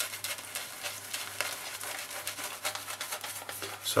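Merkur Progress adjustable safety razor, set to its top setting, scraping through two days' stubble under lather in quick short strokes: quite a noisy razor.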